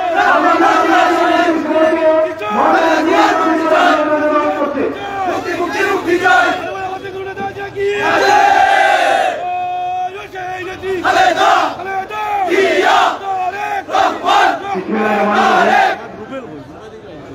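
A crowd chanting political slogans together, loud, in repeated shouted phrases.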